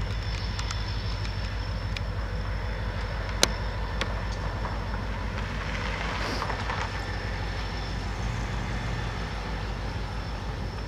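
EMD SD40-2 diesel locomotive with its 16-cylinder two-stroke engine running at low power as it rolls slowly closer, a steady pulsing low rumble. A single sharp click a little over three seconds in stands out above it.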